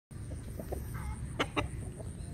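Rooster giving a few short clucks, two sharp ones close together about one and a half seconds in, over a steady low rumble.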